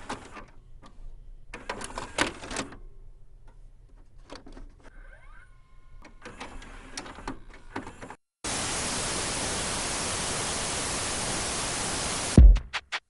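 Clicks and crackles over a low hum, with a few faint gliding tones midway. After a brief drop-out about eight seconds in, a steady hiss of static takes over.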